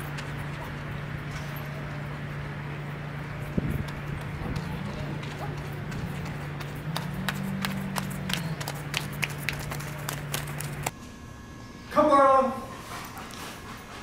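Footsteps on a gravel lot clicking over a steady low hum. The sound cuts off about eleven seconds in, and a second later comes a brief loud voice.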